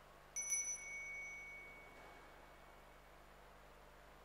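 Altar bell rung by the server during the silent Canon of the Mass, signalling a moment at the altar. Two or three quick strikes come about a third of a second in, then a high, clear ring fades away over about two seconds.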